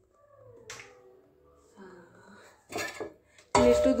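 A few faint clicks and a short clatter of household handling noise, then a woman starts speaking near the end.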